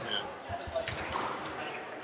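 Basketballs bouncing on a gym floor in the background, a few dull thuds about half a second in, with faint voices in the hall.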